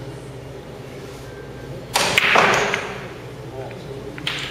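Pool break shot: about two seconds in, the cue ball hits the racked balls with a loud crack, followed by about a second of balls clacking together as they scatter across the table, and a lighter click near the end.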